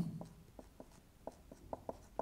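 Marker pen on a whiteboard writing small capital letters: a series of short, faint strokes.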